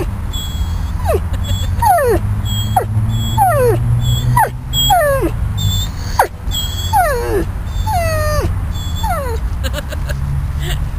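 Yellow Labrador whining over and over, about a dozen short cries that each slide down in pitch, coming roughly once a second. The owner says this is the whining he does when uncomfortable or somewhere he doesn't want to be, which makes it hard to tell whether he is in pain.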